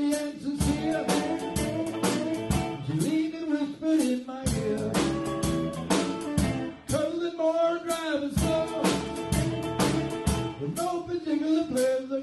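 Live rock and roll band playing an instrumental passage: electric guitar lead with bending notes over electric bass, keyboard and a steady drum beat.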